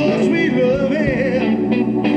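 Live blues band playing through a stage PA: a wavering lead melody bends up and down in pitch over upright bass and drums.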